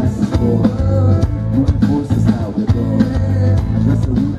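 A live pop band playing with electric guitar, bass guitar, drum kit and keyboard, with singing over a steady beat.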